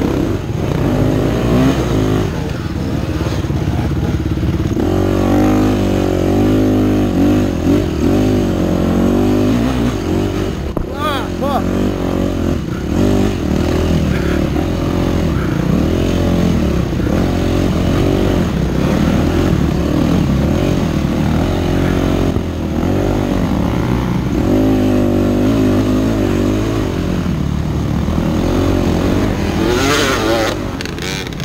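Yamaha 250F dirt bike's single-cylinder four-stroke engine under way, its note rising and falling continually as the throttle is worked over the rough trail, with a short dip about four seconds in before it pulls again.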